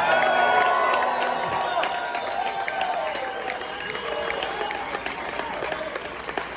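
Audience applauding and cheering after a song ends, with a few voices calling out; the applause gradually dies down.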